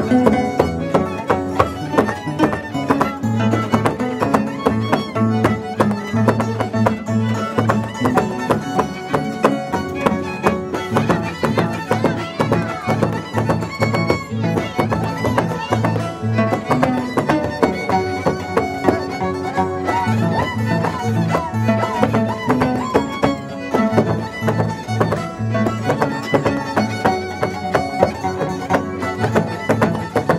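Jaranita, an Andean dance music, led by a violin over a steady, evenly pulsing bass beat.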